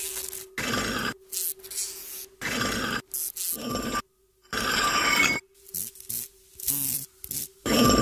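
A string of short, separate sound effects with brief gaps between them, over a faint steady hum.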